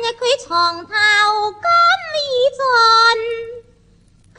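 A woman singing a Cantonese opera (yueju) phrase in a high voice with sliding, wavering pitch over faint accompaniment. The phrase stops near the end.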